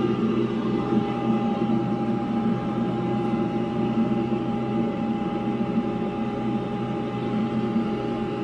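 Glowforge laser cutter's fans running with a steady hum and a faint steady whine.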